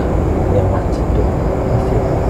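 A steady low rumble, like vehicle traffic running in the background, with low voices over it.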